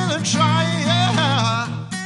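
Man singing to his own strummed Yamaha acoustic guitar; his voice holds a last note and stops shortly before the end, leaving the guitar strumming on its own.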